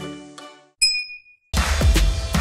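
A single bright notification-bell ding about a second in, after the previous music has died away. About a second and a half in, loud electronic music with a heavy bass beat starts.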